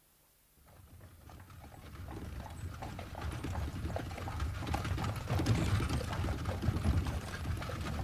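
Horse-drawn carriage sound effect: hoofbeats and the rumble of iron-rimmed wheels, fading in from silence about half a second in and growing louder.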